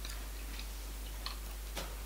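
Quiet room tone: a steady low hum and hiss, with a few faint, irregular small clicks.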